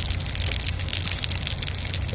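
A whole fish grilling in a steel pan over a small wood-burning stove: a steady sizzle thick with fine crackles. A low steady rumble runs underneath.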